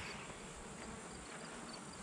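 Faint steady buzzing of honey bees flying around a hive.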